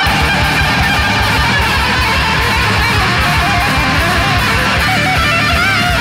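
Death metal instrumental passage: a distorted electric lead guitar plays long bent and wavering notes, then quicker stepped notes, over heavy drums, bass and rhythm guitar.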